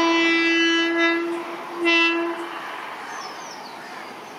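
Horn of an approaching Indian Railways electric locomotive: one long, loud, steady blast, then a second shorter blast about two seconds in.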